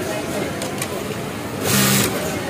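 Industrial single-needle sewing machine running a short burst of stitching near the end, a loud hiss-like clatter over a steady motor hum.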